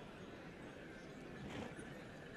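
Horses of a mounted tbourida troupe moving at a slow pace, faint, with a short louder sound about one and a half seconds in.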